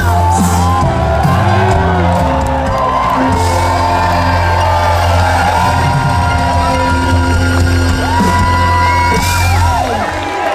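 Live band playing the closing bars of a Flemish schlager song, with electric bass, drums, trumpet and saxophone carrying a steady beat under the melody. A crowd whoops along with it.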